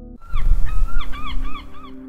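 Birds calling, a quick run of short rising-and-falling cries at about four a second, over a loud rushing, rumbling background that starts suddenly a moment in.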